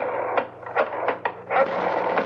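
Radio-drama sound effect of a telephone handset being picked up and dialled: a run of irregular mechanical clicks and clatters.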